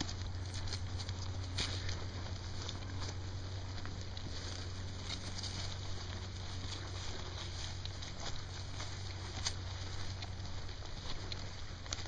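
Footsteps through grass and leaf litter, with irregular small crackles over a steady low rumble.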